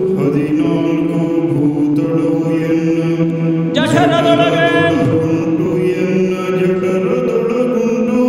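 Yakshagana bhagavata (lead singer) singing a long, held, ornamented line in a chant-like style, with a strong new phrase starting about four seconds in. Light accompaniment from the maddale drum and small hand cymbals sits beneath the voice.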